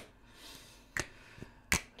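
Two short sharp clicks in a quiet pause, one about a second in and a louder one near the end.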